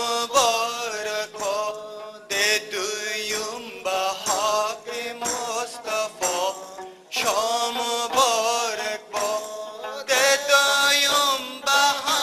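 Traditional Wakhi song music: a sliding, ornamented melody line in short phrases broken by brief gaps, over steady sustained low notes.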